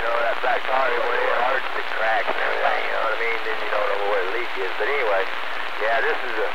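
Distant stations' voices coming in over a CB radio, garbled and hard to make out, under a steady hiss of static.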